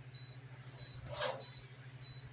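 Kitchen timer beeping: four short high beeps, evenly spaced about two-thirds of a second apart, signalling that the roasting shrimp is done. A brief rustle about a second in.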